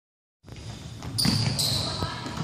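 Basketballs bouncing and being caught on a hardwood gym floor, with two short high squeaks, like sneakers on the court, a little over a second in. Sound only begins about half a second in.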